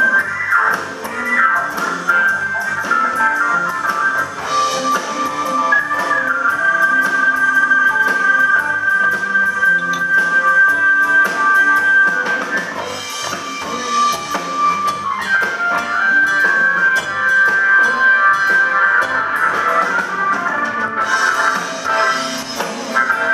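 Live blues jam band playing an instrumental passage on electric guitars, bass guitar, keyboard and drum kit, with long held notes over a steady drum beat.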